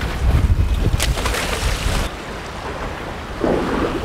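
Wind buffeting the microphone over open-sea waves washing against a boat's hull, with a burst of hiss about a second in. About halfway through, the sound turns suddenly duller.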